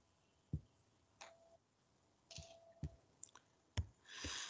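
Several faint, sharp computer mouse clicks at irregular intervals.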